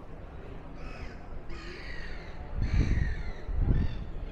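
A crow cawing about four times in short harsh calls over a low street rumble, with two louder low thumps near the end.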